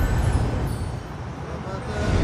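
Theme music of a TV show's title bumper over a deep low rumble, dipping in level about a second in and swelling again near the end.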